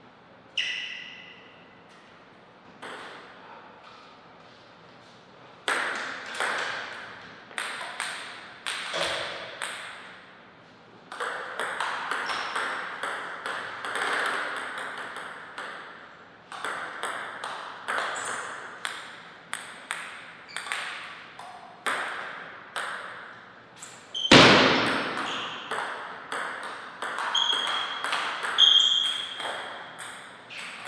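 Table tennis ball clicking off paddles and the table in rallies, with quick runs of bounces between points. One much louder, deeper knock comes about three-quarters of the way through, and short high squeaks sound near the end.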